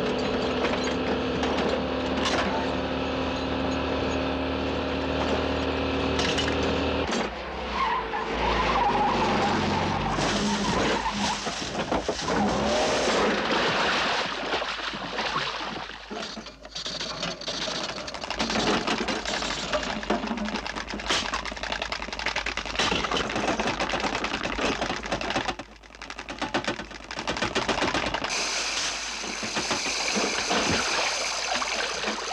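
A Citroën 2CV's small engine running at steady revs. About seven seconds in, this gives way to a long, loud stretch of crashing and splashing as the car ploughs into a swimming pool. Near the end comes a steady rush of water pouring off the car as it is hoisted clear.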